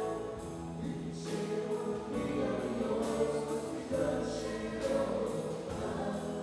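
A live band playing with singing, keyboard, guitars and drums, over a steady beat.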